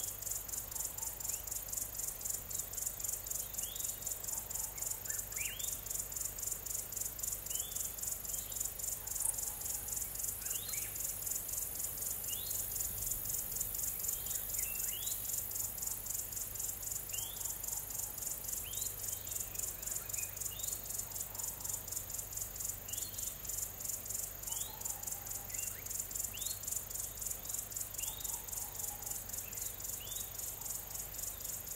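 A steady chorus of insects, a fast high-pitched pulsing, with short sweeping bird chirps every second or two.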